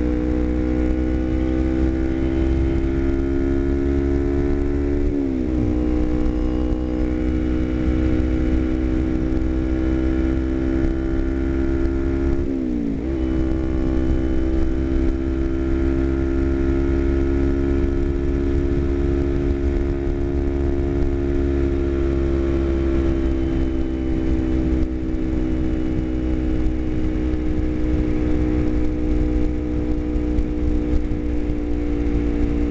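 Sport motorcycle engine running steadily at road speed, with two quick breaks in the engine note about 5 and 13 seconds in as gears are changed. Heavy wind rumble on the microphone underneath.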